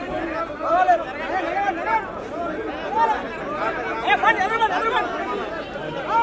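Crowd chatter: many men talking and calling over one another at once, with a few louder voices standing out now and then.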